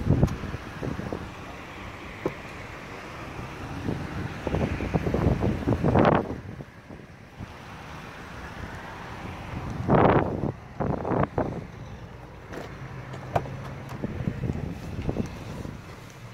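Wind buffeting the phone's microphone, with two strong gusts about six and ten seconds in, over a steady low rumble of road traffic.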